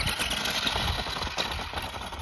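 1:15-scale Spin Master All-Terrain Batmobile RC truck driving fast over loose gravel: a steady crunching rasp from its tyres, with many small clicks of stones.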